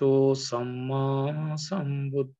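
A man chanting Pali devotional verses, holding long syllables on a steady, near-monotone pitch with short breaks between phrases.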